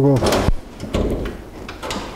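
Bonnet catch of a small Honda car released by hand and the steel bonnet lifted: a sharp metallic clatter about a quarter of a second in, a dull thud, and a shorter rattle near the end.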